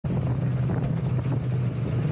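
Motorcycle engine running steadily while riding at road speed, a low even drone mixed with the rush of wind.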